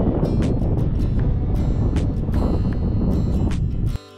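Wind buffeting the microphone in a loud, steady rumble, with background music playing underneath.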